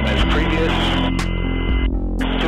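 Helicopter noise heard through the crew intercom: a steady low hum of several held tones that shift abruptly a couple of times, over a hiss.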